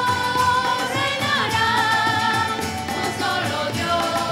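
Mixed choir of men and women singing a devotional song together, accompanied by guitar and other instruments, with long held notes.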